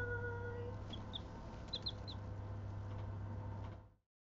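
Young chicks peeping in a few short, high chirps, a pair about a second in and a quick cluster about two seconds in, over a steady low hum. The sound fades out just before the end.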